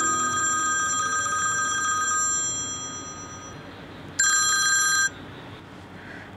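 A telephone ringing twice. The first ring starts at once and fades away over about three seconds; the second, shorter ring comes about four seconds in and cuts off after about a second.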